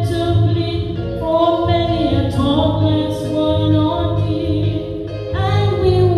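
A woman singing a gospel hymn slowly into a microphone through the church's PA, other voices joining, over a low beat that comes about once a second.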